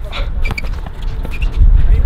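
A basketball being dribbled on an outdoor hard court, with a couple of short knocks about half a second in and near the end, under a low steady rumble and faint voices.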